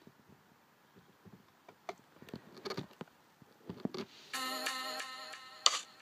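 Faint clicks and rustling at first, then about four seconds in a K-pop music video starts playing back: electronic pop with steady synth tones, broken by a sharp click and a brief pause near the end.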